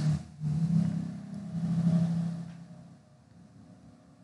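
A low, steady hum that swells to its loudest about two seconds in and fades away by three seconds, followed by near silence.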